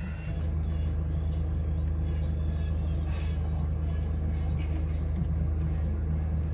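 Van engine idling, a steady low hum heard from inside the cabin.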